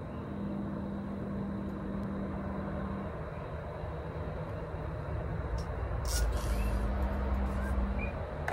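A road vehicle passing by, a low rumble that builds to its loudest near the end, with a short hiss about six seconds in.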